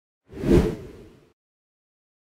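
A single whoosh sound effect for a title-card transition. It swells quickly and fades out within about a second.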